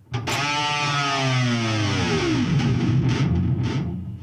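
Electric guitar dive bomb on a Fender Player HSS Stratocaster with a Floyd Rose floating tremolo, played through high-gain distortion. A note is struck and the tremolo arm is pushed all the way down, so the pitch slides steadily down over about two seconds. It ends in a low, slack growl that rings on until near the end.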